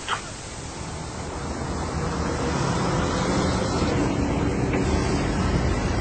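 A steady rushing noise with a low hum beneath it, fading up over the first two or three seconds and then holding level: an ambient sound bed between passages of narration.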